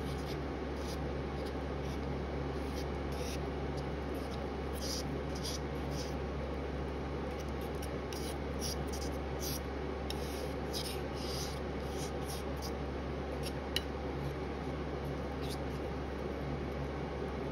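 Metal palette knife scraping and spreading thick wet aluminium-flake watercolour paste across a glass slab: a run of short scraping strokes, thickest in the middle, over a steady low hum, with one sharp tick of the blade late on.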